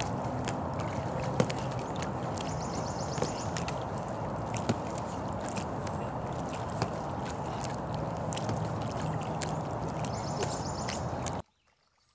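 Water sloshing and lapping around a small kayak hull as it moves on calm water, with scattered small clicks and knocks. The sound cuts off abruptly near the end.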